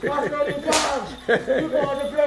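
A Jab Jab masquerader's whip giving one sharp crack a little before the middle, amid voices calling and laughing.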